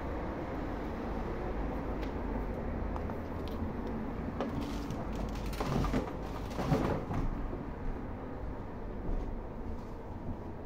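Road traffic: a steady low rumble of passing cars, growing louder with a few brief clattering knocks between about four and seven seconds in.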